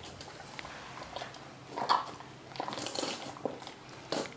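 Brown bear cub eating cottage cheese from a bowl with its muzzle in the bowl: chewing and mouth noises in irregular bursts, the loudest about two seconds in.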